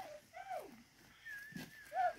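Rhino calf squealing: short high-pitched calls that rise and fall in pitch, one about half a second in and a louder one at the end.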